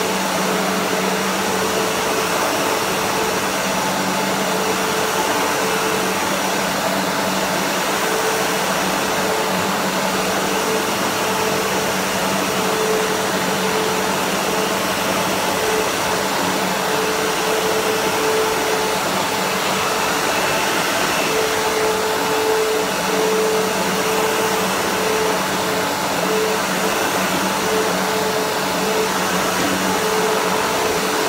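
Sebo Automatic X1 upright vacuum cleaner running steadily as it is pushed back and forth over a short-pile rug, a dense steady rushing noise with a motor hum underneath that swells and fades.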